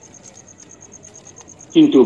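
A cricket chirping steadily: a high-pitched pulse about eight times a second. A voice starts speaking near the end.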